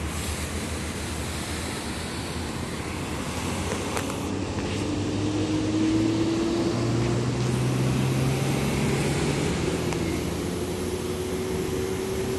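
GE C39-8 diesel-electric locomotive engines running, with the V16 engines throttling up about four seconds in: the engine note rises in pitch and grows louder, then holds a steadier drone as they work under load.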